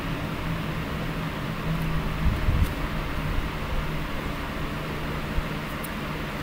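Steady hum of an electric room fan with a low motor tone, and a few faint clicks from a plastic model car body being handled.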